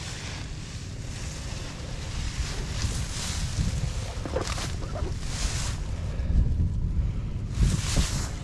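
Wind buffeting the microphone with a steady low rumble, and several short bursts of dry reeds and grass rustling as someone pushes through them, from about three seconds in and again near the end.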